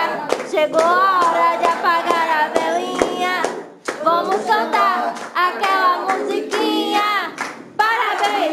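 A group of people singing a birthday song together while clapping their hands in rhythm, with brief breaks about four seconds in and near the end.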